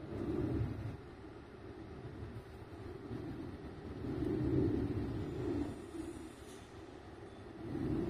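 Low rumbling outdoor noise that swells and fades, loudest just after the start, again about four to five seconds in, and near the end.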